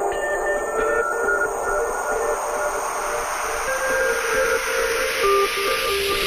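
Trance track in a breakdown: held synth notes stepping between pitches over a rising noise sweep that grows louder and brighter toward the end, with no bass or beat.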